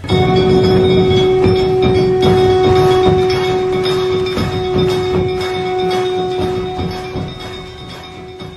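Temple bell rung over and over: a loud, sustained ringing tone with rapid repeated clapper strikes. It begins suddenly and fades toward the end.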